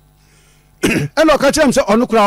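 Speech: a person talking, resuming after a short pause, with a brief sharp vocal noise just before the words start, a little under a second in.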